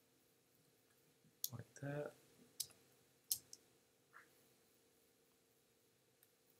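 Several sharp, short computer mouse clicks over a faint steady hum of room tone.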